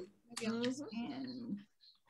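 Quiet, indistinct talking for about a second and a half over a video call, then a short pause near the end.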